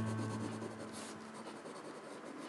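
Orange Prismacolor Premier colored pencil shading on paper: quick, repeated back-and-forth strokes of the lead scratching across the sheet.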